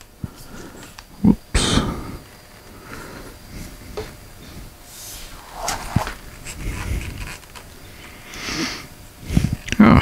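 Handling noise from a walimex WT 501 boom stand being set up: a few scattered sharp clicks and knocks from its tubes and clamps, with softer rubbing and rustling between them.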